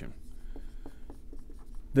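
Marker writing on a whiteboard in a series of short strokes.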